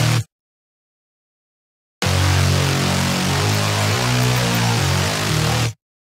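Heavy, layered saw-wave bass synth (Serum) playing a quick drum and bass riff, broken by dead-silent gaps: it cuts off just after the start, comes back about two seconds in for a few seconds of riff, then cuts off again near the end. The silent gaps are left for a screamer bass to fill.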